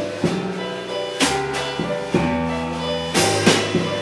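Live blues band playing an instrumental bar between vocal lines: electric guitar, keyboard and drum kit, with cymbal crashes about a second in and again near the end.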